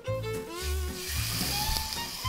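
Background music with a steady bass beat. About a second in, a whole oil-marinated trout lands in a hot dry frying pan and begins to sizzle.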